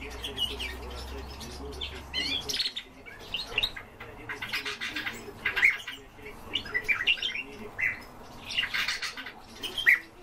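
Eurasian tree sparrow chirping: short, sharp notes repeated in quick clusters, with the loudest chirps about five and a half seconds in and near the end.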